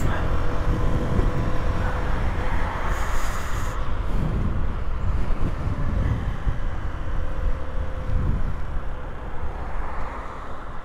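Honda CB125F's single-cylinder engine running steadily at road speed, mixed with heavy low wind rumble on the rider's microphone.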